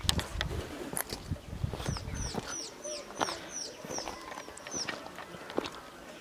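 A bird calling a run of about eight high, quickly falling chirps, roughly three a second, over a few sharp clicks and low rumble in the first couple of seconds.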